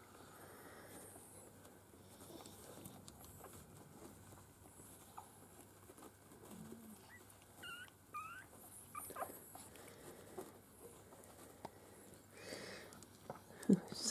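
Faint squeaks of newborn Miniature Schnauzer puppies nursing against their mother, with a couple of short high squeaks about eight seconds in over quiet shuffling.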